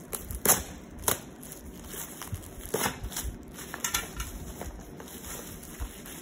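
Thin plastic wrapping crackling and crinkling as it is peeled off a cardboard box, with irregular sharp crackles and a few louder snaps.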